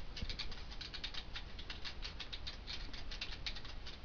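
Computer keyboard typing at a steady pace, a quick run of key clicks at about five or six keystrokes a second.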